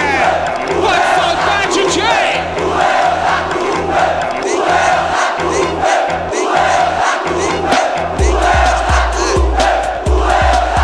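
A football supporters' crowd chanting, mixed over a funk carioca (pancadão) DJ beat with a repeating bass line. About eight seconds in, a deep bass kick drum enters at about three beats a second, with fast hi-hat ticks over it.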